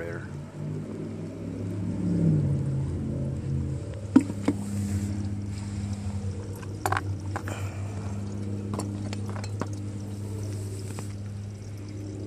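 A steady low engine-like hum, with a pitch that sags briefly about two seconds in, and a few sharp light clicks, typical of small metal parts being handled.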